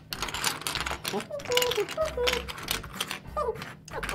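Small plastic letter and number tiles clicking and clattering together as they are handled and pushed around on a tabletop, in a quick irregular run of light clicks.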